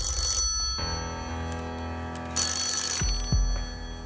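Bell of a black rotary desk telephone ringing twice: one ring dies away less than a second in, and a second, shorter ring comes about two and a half seconds in. It is the Banker calling in with an offer, over a sustained music bed.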